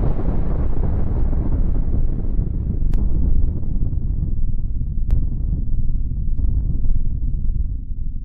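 Explosion sound effect's low, rumbling tail, dulling steadily as its higher part fades out, with two short clicks about three and five seconds in.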